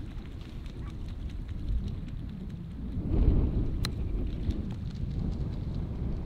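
Wind buffeting the microphone, a steady low rumble that swells about three seconds in, with one sharp click just after it, a golf club striking the ball on a chip shot from the fringe of the green.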